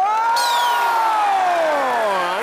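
One voice letting out a long, drawn-out 'ooooh' that rises, holds, and slowly falls in pitch, a whoop of reaction to a joke, over studio audience clapping and cheering.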